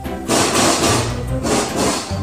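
An animal making loud, raspy cries in two bursts, the second one shorter.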